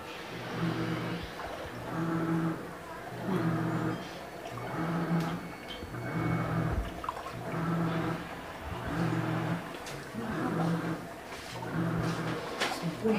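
Panasonic 6.5 kg top-loading automatic washing machine in its wash cycle: the pulsator motor hums in short, regular bursts about every second and a half, churning the clothes back and forth in soapy water.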